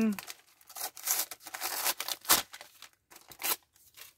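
Gift wrapping paper being torn open and crinkled by hand, in a series of short, separate rips and rustles.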